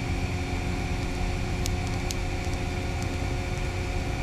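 Steady mechanical background drone of an industrial building's machinery or ventilation: a low rumble with several held tones. A couple of faint light clicks come near the middle, likely from the wires or connectors being handled.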